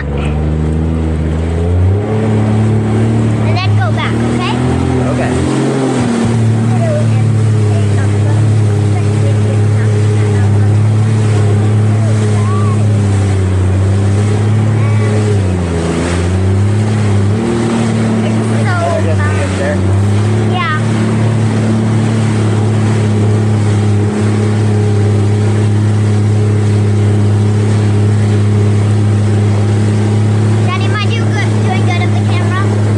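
Jet ski engine running at speed over the water. The pitch climbs as it picks up speed about a second in, then dips and comes back twice as the throttle eases and opens again. A rush of spray and wind runs under it.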